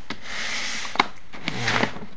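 Plastic dog-food bag crinkling and sliding across a wooden tabletop as it is turned around by hand, with a sharp knock about a second in.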